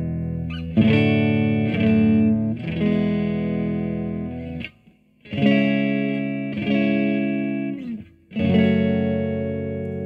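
Clean electric guitar strumming a series of chords through a Zebra-Trem tremolo pedal set to a sine waveform. The playing drops out briefly about five seconds in, then starts again with fresh chords.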